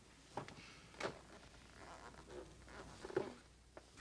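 Quiet room tone with a few faint, soft clicks or rustles, one near the start, one about a second in, and one a little after three seconds.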